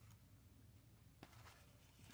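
Near silence: faint room tone with a steady low hum, and one faint click a little over a second in.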